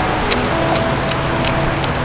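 Surf breaking on a sandy beach, heard as a steady rushing noise, with a couple of small clicks.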